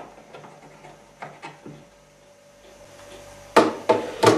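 Light clicks and taps as a power cable is handled inside an empty TV cabinet, over a faint steady hum. A sharp, louder knock comes near the end.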